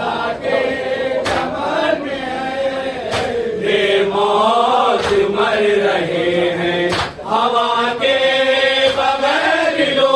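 A group of men chanting an Urdu mourning salaam in unison behind lead reciters, the melody rising and falling in long sung lines. A sharp strike cuts through about every two seconds.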